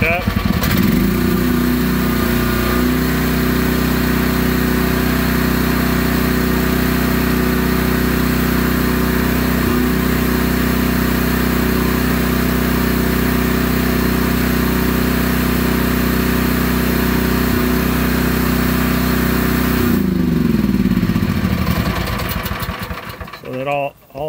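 Gasoline engine of an FF Industrial FF12 mini excavator revving up from idle to full throttle in the first couple of seconds. It holds steady at maximum speed, about 3600 rpm, then winds down near the end.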